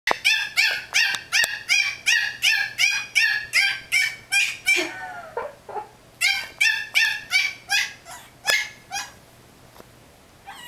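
Yorkshire terrier puppy barking in rapid high-pitched yips, about three a second, breaking into a couple of falling whines about halfway through, then yipping again and stopping near the end. The puppy is shut in a playpen and wants out to get at the cat.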